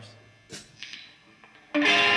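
A lull with a faint click or two, then, near the end, a loud electric guitar chord struck suddenly and left ringing: the opening of a rock song played live.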